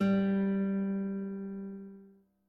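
A single musical note struck sharply and left to ring, fading away over about two seconds.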